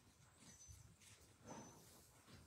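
Near silence: room tone with faint scattered rustles and soft knocks, and a brief faint high tone about a second and a half in.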